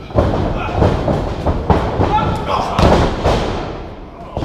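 Wrestlers' bodies hitting the ring canvas: several heavy thuds as one man takes the other down to the mat, the sharpest about halfway through, with shouting voices in between.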